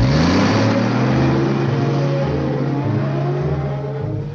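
Animated-cartoon sound effect of a truck engine revving up, rising in pitch at first, then running steadily under a loud hiss as the truck pulls away.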